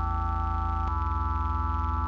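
Electronic synthesizer music with the highs filtered out: steady pure tones held over a deep, pulsing bass, and the bass changes about a second in.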